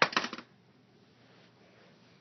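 A quick clatter of small hard plastic toy pieces, a rapid run of sharp clicks lasting under half a second at the start, then only faint room noise.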